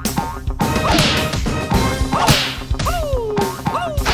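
Cartoon sound effects: a run of quick squeals that rise sharply and then slide down, about five of them, mixed with whooshes and smacks over background music.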